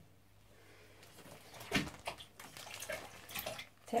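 Bath water splashing and sloshing as a child moves about in the bath: quiet at first, then irregular splashes from about a second and a half in, the sharpest one shortly after they begin.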